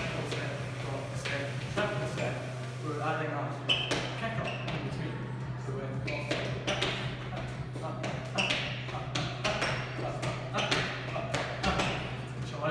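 Footwork of swing-dance steps: shoes tapping and scuffing on a hard tiled floor in quick, uneven clicks, over a steady low hum.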